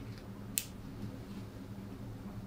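Quiet room hum with one sharp click about half a second in, from a stethoscope chestpiece being handled and placed against the chest.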